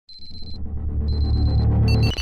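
Electronic logo-intro sound design: a deep bass drone swells up under two high electronic beeps, each about half a second long and a second apart. A cluster of several high electronic tones breaks in near the end.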